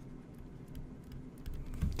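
Faint light taps and scratches of a stylus writing on a tablet screen, over a low steady hum.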